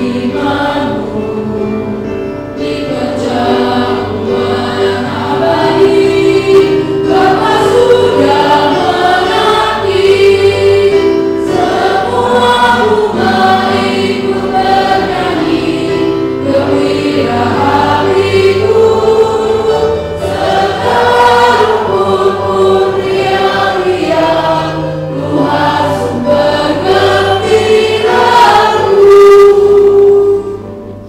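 Women singing a Christian worship song together through a microphone, with sustained low accompaniment underneath. The singing cuts off abruptly at the end.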